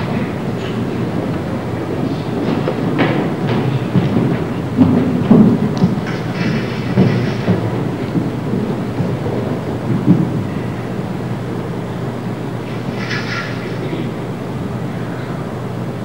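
Low rumbling and shuffling of a group of children moving about on a stage platform, with a few louder thumps and faint murmurs.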